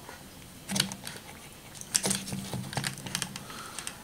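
Small plastic clicks and rattles from the pinwheel windmill's hub as the plastic retaining clip is pushed back onto the spindle: one click about a second in, then a quick run of light clicks in the second half.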